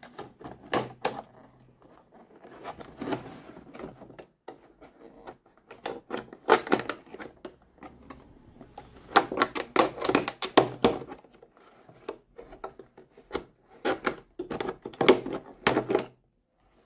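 Utility knife blade cutting along the seam of a stiff clear plastic blister pack, with rapid crackling clicks as the plastic gives, in several bursts.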